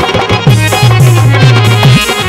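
Instrumental passage of Haryanvi ragni folk accompaniment: a hand drum plays repeated booming bass strokes that slide down in pitch, about three a second, over a sustained keyboard melody.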